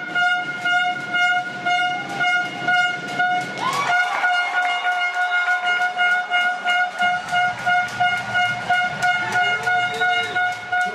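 A steady, high, horn-like tone held unbroken at one pitch, over a rhythmic beat of about two strokes a second, with a couple of brief sliding tones.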